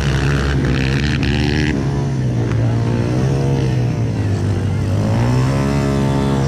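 Motocross dirt-bike engines revving and easing off on the track, their pitch rising and falling in long sweeps over a steady low drone.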